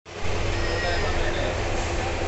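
Steady low rumble and a constant hum inside a passenger train coach, with voices in the background.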